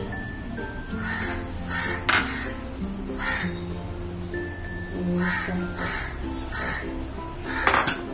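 A bird cawing repeatedly, about seven harsh calls, over light background music, with one sharp clink about two seconds in.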